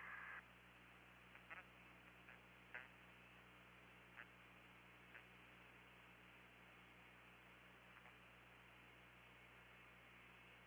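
Near silence on a radio and commentary audio line: a faint steady hiss with a low hum. A brief tone cuts off just after the start, and a few faint short chirps follow in the first five seconds.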